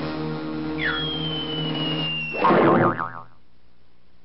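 Cartoon soundtrack: a held orchestral chord with a quick downward whistle slide and a long, slowly falling high note. About two and a half seconds in comes a loud bonk with a wobbling boing, the loudest part. Then the music stops.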